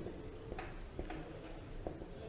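Faint, irregular light clicks and taps of a marker on a whiteboard, a few separate ticks over a low room hum.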